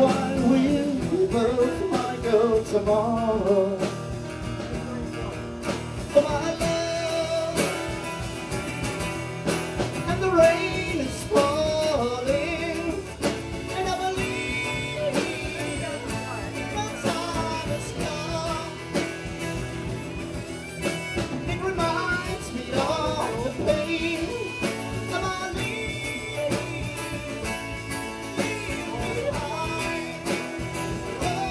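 Live acoustic band playing a song: steel-string acoustic guitars strumming steadily under a wavering lead melody line.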